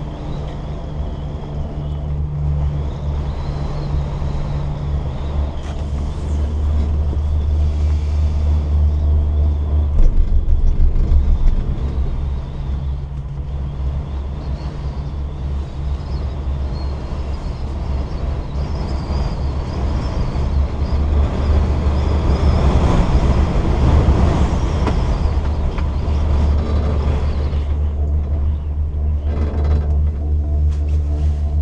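Steady low rumble and hiss heard inside the closed bubble hood of a Doppelmayr chairlift chair riding up the line. It grows louder and rougher for a few seconds about two-thirds of the way through.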